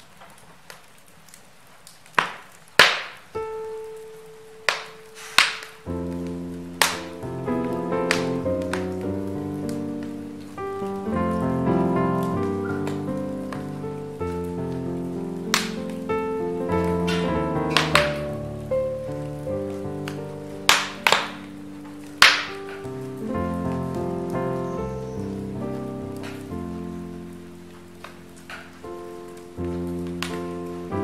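Log fire crackling with sharp, scattered pops. Soft instrumental Christmas music comes in about six seconds in and plays on under the crackle.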